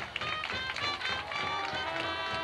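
A high school marching band playing its field show: many instruments sounding pitched notes together over regular percussion hits.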